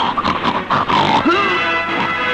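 Film background music with a burst of rough, animal-like cries and hits through the first second, then short gliding cries.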